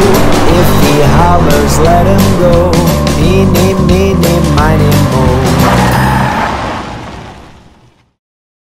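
Upbeat children's-song backing music with a steady beat, mixed with a cartoon car's engine revving and tyres squealing as it spins its wheels. Everything fades out over the last two seconds.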